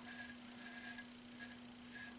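Custom 8/8 straight razor scraping through lathered stubble on the chin and jaw: several short, faint rasping strokes.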